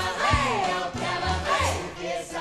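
A group of voices singing a cabaret show tune in full voice over a small band with a steady low beat.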